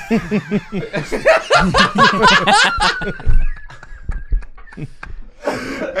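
Several men laughing hard together, loudest in the first three seconds. It dies down to a thin, high, held wheeze and breaths, then picks up again near the end.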